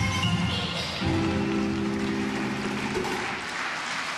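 Floor exercise routine music ending on a held chord about a second in, which fades out near the end as audience applause comes up.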